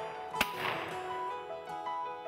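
A single shotgun shot about half a second in, with a short ringing tail, over background music.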